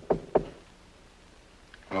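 Knocking on a door: quick knocks, about four a second, stopping about half a second in.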